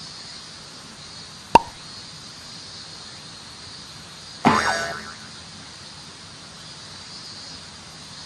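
Two comic sound effects: a sharp pop about one and a half seconds in, then a louder springy boing that falls in pitch and fades within about half a second.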